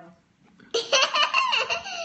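Loud laughter breaking out under a second in, its pitch sliding downward near the end.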